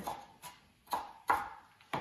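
Kitchen knife chopping carrots on a cutting board: four separate knocks of the blade hitting the board, about half a second apart.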